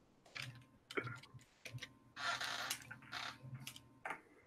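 Faint, irregular clicks of typing on a computer keyboard, with a short hiss a little past the middle and a low steady hum underneath.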